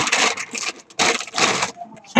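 Plastic bags of model-kit parts runners crinkling and rustling as they are handled, in two bursts with a short pause between.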